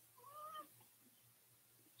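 A faint, short, high-pitched vocal cry that rises and then falls over about half a second, near the start; after it, near silence.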